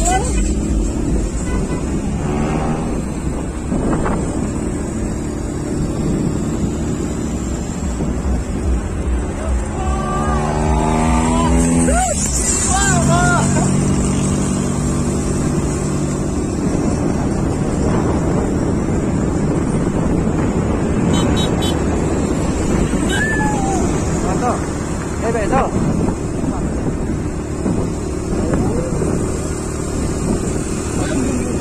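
A moving vehicle's steady low rumble of engine and road noise, with wind hiss on the microphone. Voices call out now and then, most strongly about ten to thirteen seconds in.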